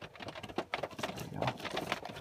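A run of irregular light clicks from a handheld OBD readout box's push-button and knob being pressed to step through its parameter list.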